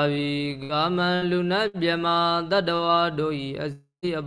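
Buddhist monk chanting, one male voice holding long, sustained notes with small steps in pitch, breaking off just before the end.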